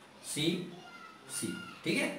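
A man's short wordless vocal sounds, twice, between spoken phrases.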